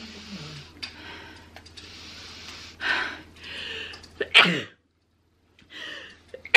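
A woman sneezing: a few seconds of breathy, halting inhales build up, then one sharp, loud sneeze about four seconds in.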